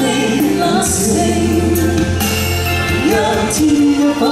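A woman and a man singing a Cantonese pop ballad as a live duet over instrumental backing, with long held sung notes.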